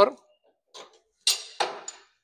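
Two short clacks about a third of a second apart, with a faint high ring after the second: metal parts of a saw-sharpening machine's saw holder being handled.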